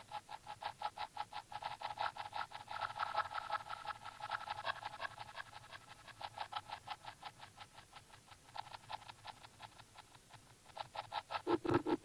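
Electronic music in a breakdown: a rapidly pulsing synth with the bass dropped out, and the bass returning with louder pulses near the end.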